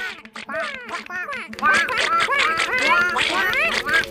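Several animated bird-like characters chattering at once in high, squeaky chirps that rise and fall in pitch, getting busier about one and a half seconds in, over a steady low hum.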